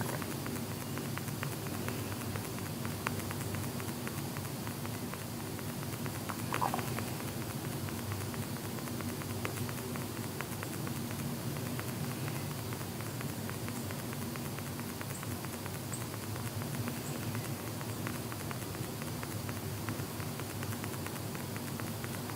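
Light, irregular tapping of a fingertip on a phone's touchscreen, many small clicks in a row, picked up by the phone's own microphone over a steady low hum.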